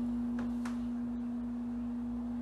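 A single steady low tone, like a hum, held unchanged throughout, over a faint low rumble.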